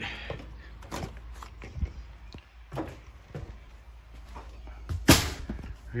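A travel trailer's entry door and screen-door latch being worked as someone steps in: scattered clicks and knocks, the loudest a sharp knock about five seconds in.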